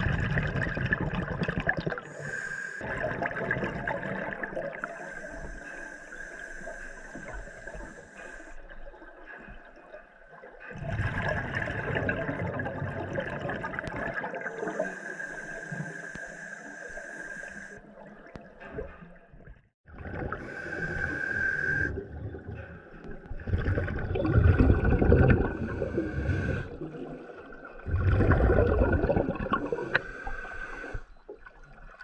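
Scuba regulator breathing underwater: a hissing inhalation, then the burst of bubbles from the exhalation, repeated about four times. A steady high tone runs underneath.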